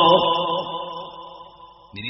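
The end of a man's chanted recitation through a PA system: the last held note dies away in the hall's reverberation and fades nearly to quiet near the end.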